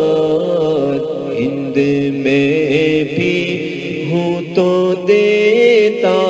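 An Urdu manqabat, a devotional poem in praise of Ghaus-e-Azam, sung in a chanting style. The voice holds long, wavering melodic notes with no clear words, over a steady lower drone.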